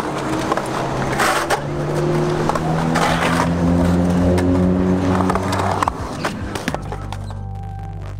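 Skateboard wheels rolling and carving across a concrete bowl, swelling and fading with each pass, with sharp clacks of the board, over background music with held notes. The skating sounds stop about seven seconds in, leaving a low held music note.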